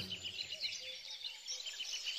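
Faint birds chirping: many short, high calls in a soft background.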